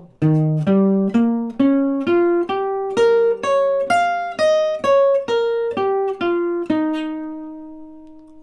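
Archtop guitar playing single picked notes at about two a second: an arpeggio phrase that climbs, then comes back down to the root of E flat, held and left to ring out. It is a G half-diminished arpeggio played over E flat, the root added, giving a seventh-and-ninth sound.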